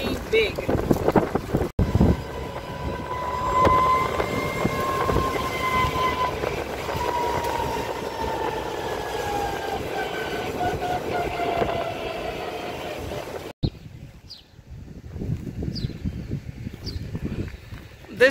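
Renault Twizy electric car driving, heard from inside its small open-sided cabin: road and wind noise under a high electric-motor whine that drifts slowly down in pitch as the car slows. The whine and noise stop abruptly about 13 seconds in, giving way to quieter outdoor sound with a few short chirps.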